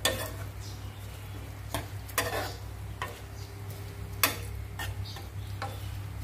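Metal spoon and wooden spatula stirring and tossing minced-pork larb in a non-stick pan, with irregular scrapes and clicks against the pan about once a second. A steady low hum runs underneath.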